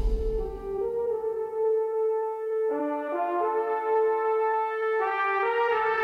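Music: sustained brass chords, each held for a second or two before shifting to the next. There is no beat.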